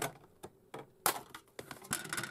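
A scored styrene plastic sheet snapped in two by hand along its score line, heard as a few sharp cracks and clicks, the loudest about a second in, as the sheet breaks and the halves are handled.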